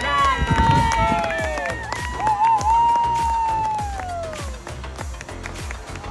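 Spectators cheering a goal: several voices rise together at the start, then one high voice holds a long shout that wavers and falls away about four and a half seconds in.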